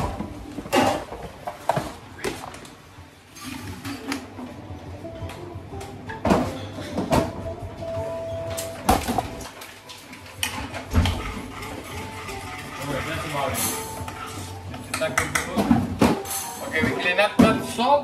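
Kitchen clatter: ceramic bowls, spoons and stainless-steel trays clinking and knocking irregularly as dishes are plated, over indistinct voices and music.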